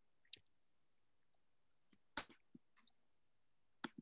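Near silence broken by five or so short, sharp clicks at uneven intervals, the loudest a little after two seconds in.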